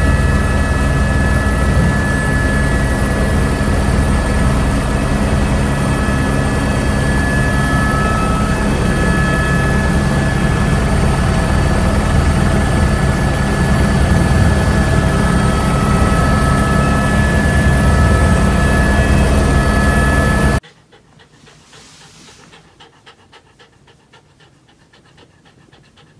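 Helicopter engine and rotor noise heard from inside the cockpit in flight: a loud, steady rumble with a high, even whine over it. It cuts off suddenly about twenty seconds in, leaving only a faint sound.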